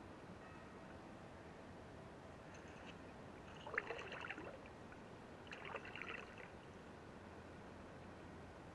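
Two paddle strokes in water, about two seconds apart, each a short splash and trickle, over a faint steady hiss.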